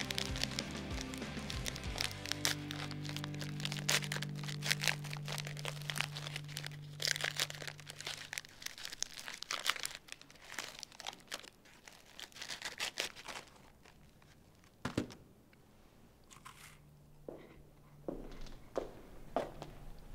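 Plastic wafer wrapper crinkling and tearing as it is opened by hand, dense for the first dozen seconds and then only a few scattered crackles. Soft background music with held notes runs under it and ends about halfway through.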